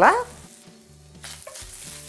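Cumin seeds, grated ginger and green chili sizzling faintly in oil in a stainless steel pan. The hiss grows louder after about a second as a wooden spatula starts stirring them, with a small click partway through.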